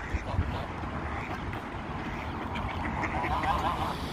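Mixed flock of ducks and geese calling on the water, with quacks and honks loudest in a cluster near the end, over a steady low rumble.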